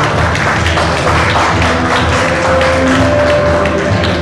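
Audience clapping over loud background music with a steady low beat.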